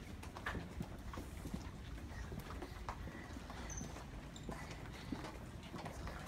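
Footsteps of several people walking on a hard floor: shoes click and tap irregularly, a few times a second.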